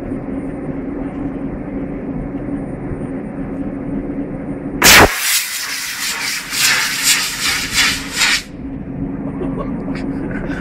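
An expired line-throwing apparatus rocket fires from a hand-held improvised launcher with a sudden loud blast about five seconds in. The rocket motor's rushing hiss follows for about three and a half seconds, then cuts off abruptly.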